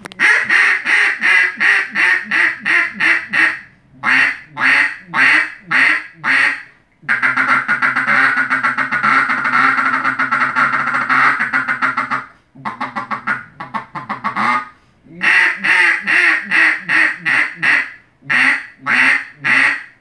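Custom double-reed red eucalyptus duck call blown in loud runs of quacks with short pauses between them. In the middle comes one long unbroken run of rapid rolling notes, about five seconds long, and then more runs of quacks follow.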